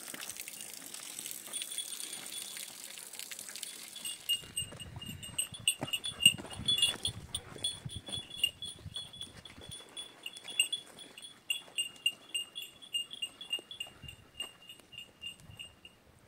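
A small metal bell jingling in short rings, a few per second, in step with footsteps scuffing on a gravel path. This starts about four seconds in, after a steady hiss.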